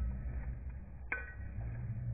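A single sharp metallic clink with a brief ring about a second in, over a low steady hum.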